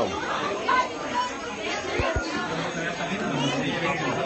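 Background chatter of several people's voices, with two short low thumps in quick succession about halfway through.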